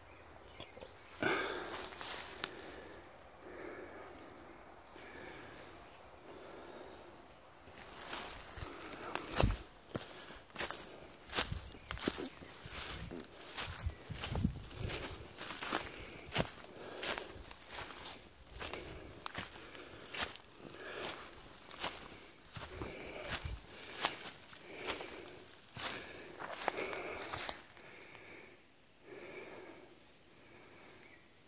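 Footsteps of a person walking through forest undergrowth, a steady pace of a little over one step a second, starting about eight seconds in and easing off near the end.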